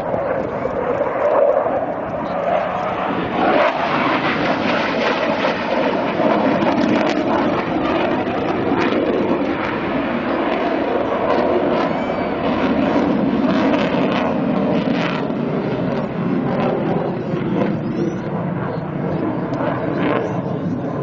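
MiG-29 fighter's twin RD-33 turbofan engines as the jet flies overhead: a loud, steady jet noise with no break.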